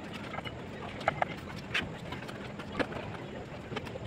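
Mason's steel trowel tapping and scraping on bricks and mortar while setting a course of a brick wall: a few short sharp taps, two in quick succession about a second in, over a steady low hum.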